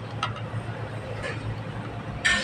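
Metal fork and spoon scraping lightly on a plate of rice, a couple of faint touches over a steady low background hum.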